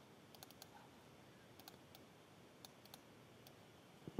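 Near silence broken by a dozen or so faint, scattered clicks from a computer mouse and keyboard.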